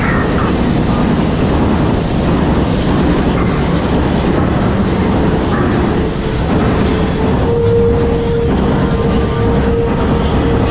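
Loud, steady rumble and rattle of the Jurassic Park flume-ride boat and its ride machinery moving through the dark show building, with a steady mid-pitched hum joining about halfway through.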